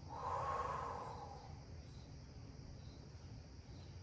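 A woman's long audible exhale, fading out after about a second and a half, then faint room tone.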